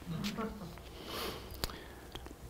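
Faint sounds from a man at a lectern between sentences: a short sniff about a second in, then a single small click.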